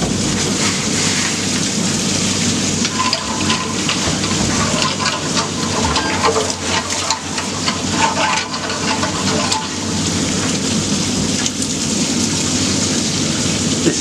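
Mine waste water pouring in a steady stream from a pipe outlet in the shaft wall and splashing down below, a loud continuous rush with many small splashes; the water is running freely from the outlet.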